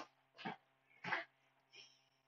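Three faint short breathy noises, about two-thirds of a second apart, close to the microphone.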